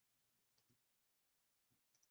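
Near silence, with a few faint short clicks about half a second in and again near the end.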